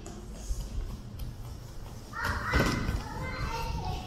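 A young child's voice calling out about two seconds in, with a single thud of a child landing a jump in the middle of it.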